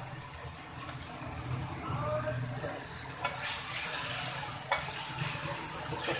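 Pieces of kidney sizzling in hot oil in a steel kadai, stirred with a wooden spatula that knocks against the pan now and then; the kidneys are being fried so their water cooks off. The sizzle grows louder a little past halfway.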